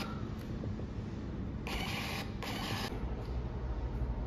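Portable thermal receipt printer printing a test page: a steady mechanical buzz of the paper feed, with two short louder passes a little after halfway.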